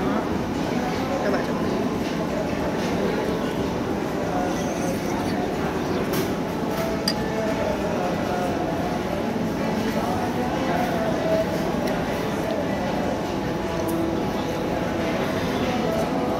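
Restaurant dining-room ambience: a steady background din with indistinct chatter and a few light clinks of spoons and tableware.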